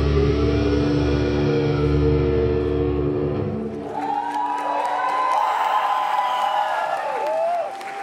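A metal band's last held chord, with heavy low guitar and bass, rings out and stops about halfway through. The crowd then cheers and applauds.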